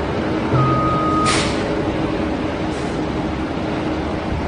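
Heavy diesel vehicle engine running steadily, with a short hiss of air about a second and a half in and a fainter one near the end.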